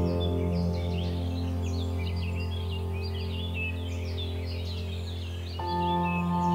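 Relaxing ambient music of sustained, held chords, with birds chirping throughout. A new chord comes in near the end.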